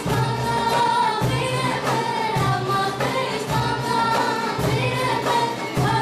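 Greek folk song performed live by several young singers in unison, accompanied by an ensemble of plucked tambouras (long-necked lutes) and traditional hand percussion keeping a steady beat.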